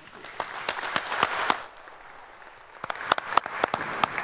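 Audience applauding: dense clapping that fades about halfway through, then a few scattered claps near the end.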